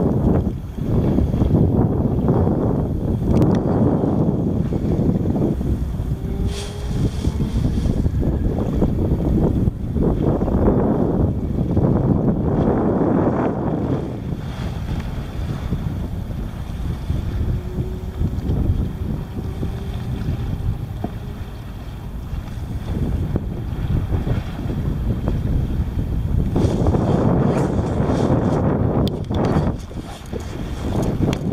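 Wind buffeting the microphone over water lapping against a kayak's hull, swelling and easing every few seconds.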